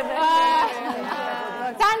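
A woman's voice, drawn out and wavering, with a brief lull before quick speech resumes near the end.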